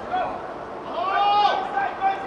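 Men's voices shouting during a football match: a short call just after the start, then one long drawn-out shout about a second in.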